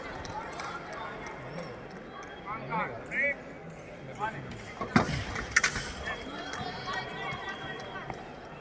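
Echoing sports-hall ambience with distant voices. There is one sharp knock about five seconds in, followed quickly by a couple of brief high clicks.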